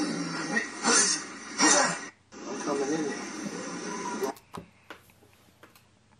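Indistinct voices, with two louder bursts about one and nearly two seconds in, stopping about four seconds in; a few faint clicks follow.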